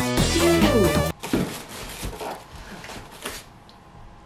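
Background music that cuts off abruptly about a second in. It is followed by quieter rustling of plastic wrap and cardboard packaging with a few soft knocks, as hands grip a boxed PC case held in foam inserts.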